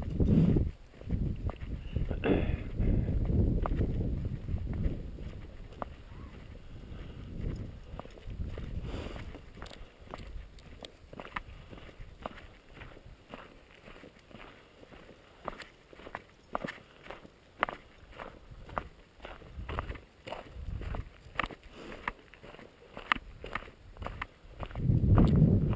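Footsteps crunching on a gravel road at a walking pace, about two steps a second, with low rumbling through the first few seconds.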